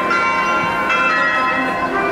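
Bells chiming, their tones ringing on and overlapping, struck afresh at the start and again about a second in.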